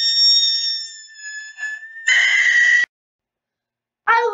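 A child's singing voice glides up and holds a very high note for about two seconds, then gives a short, louder, harsher high note. It cuts off abruptly about three seconds in, leaving dead silence.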